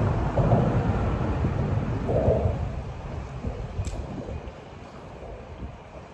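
A low rumble that swells and then fades over about four seconds, with a single sharp click near the end.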